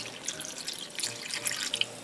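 Cloudy rice-rinsing water pouring steadily from a jug into a glass container of sliced rice cakes, filling it enough to cover them.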